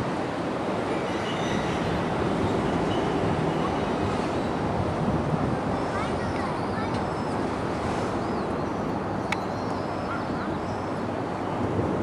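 Steady rolling noise of a rake of 203 series electric multiple unit cars hauled unpowered by a locomotive, their wheels running over the rails, with one sharp click about nine seconds in.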